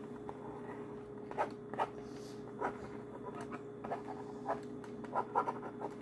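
Plastic stylus scratching across the screen of a child's magnetic drawing board in short, irregular strokes, a few scrapes a second at times, over a faint steady hum.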